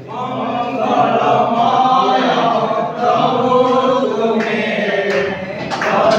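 A group of people singing a hymn together, with long held notes.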